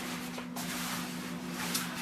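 Stiff shower curtain fabric rustling as it is handled, a soft, uneven scratchy noise; the curtain is stiffened by built-up soap scum and limescale. A steady low hum runs underneath.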